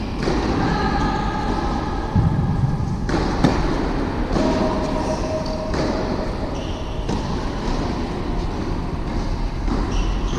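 Steady rumbling hum of an indoor tennis hall, with a couple of sharp knocks of a tennis ball being struck or bouncing about two and three and a half seconds in.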